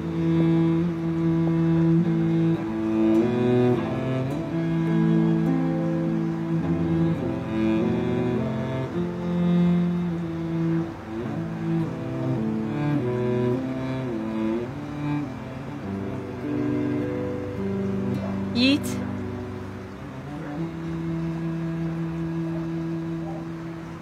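Background score of slow, sustained low bowed strings, cello and double bass, holding long notes that shift in pitch, fading toward the end. A short, sharp sound cuts through about two-thirds of the way in.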